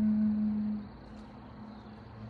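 Native American flute holding a low steady note that tapers off a little under a second in, leaving a quiet pause between phrases with faint bird chirps in the background.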